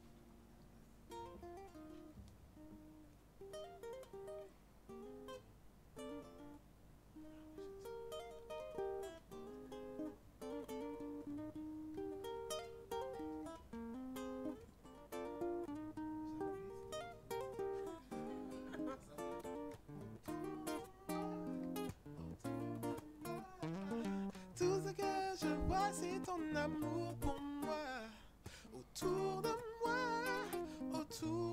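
Guitar playing a slow, picked instrumental song introduction, starting softly and growing louder, with lower notes joining in from about halfway.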